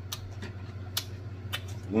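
Close-miked chewing of a mouthful of salad: a few sharp crunches and wet mouth smacks, spaced out over the two seconds, over a steady low hum.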